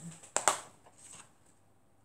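Hands handling objects at a craft table: one sharp click about half a second in, then a few faint handling sounds.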